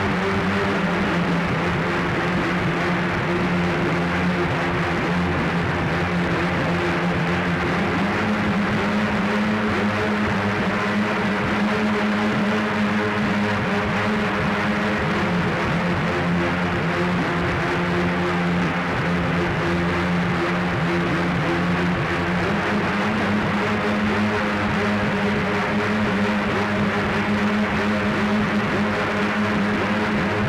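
Live electronic music: a dense, droning synthesizer texture with no clear beat, its held low tone stepping to a new pitch about 8 seconds in and again near 22 seconds.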